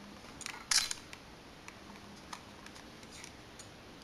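Canon S100 compact camera taking a photo: a short shutter click about three-quarters of a second in, followed by a few fainter ticks. The camera is firing again with its replaced lens barrel.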